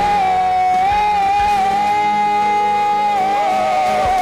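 A live worship band plays while a singer holds one long high note with a slight waver over sustained keyboard and guitar chords; near the end the note falls away. The drums mostly drop out under the held note.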